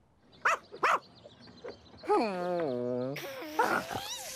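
Voice-acted cartoon dog vocalizing: two short yips about half a second apart, then a long call that slides down in pitch.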